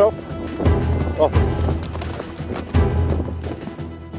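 A ridden horse's hoofbeats thudding on turf at an uneven pace as it gallops, stops and turns, over steady background music.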